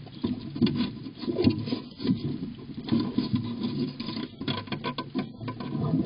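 A raccoon's paws reaching into a wooden birdhouse, scratching and rubbing over the wooden floor and through scattered seed in a run of irregular clicks and scrapes, picked up close inside the box.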